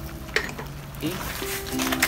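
Background music over crabs in sauce sizzling in a wok, with a short knock about a third of a second in and spoon-stirring among the crab shells near the end.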